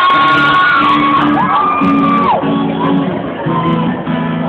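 Live band playing sustained chords as a song begins, with audience members close by screaming and whooping over it in long rising-and-falling cries.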